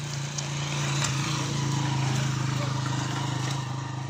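A small engine running steadily with a low drone, growing a little louder around the middle and easing off near the end.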